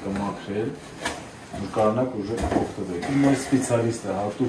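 A man speaking, with a few short clicks and knocks from something being handled on the table.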